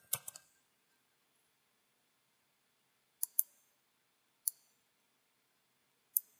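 A few computer keyboard keystrokes right at the start, then quiet broken by mouse clicks: two quick clicks a little over three seconds in, and a single click about a second later.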